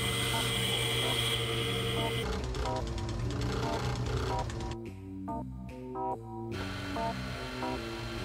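Background music of short repeated notes. For the first two seconds a steady high whine of a diamond-cutting saw blade runs under it, then cuts off.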